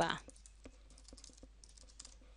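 Typing on a computer keyboard: a run of quick, faint key clicks.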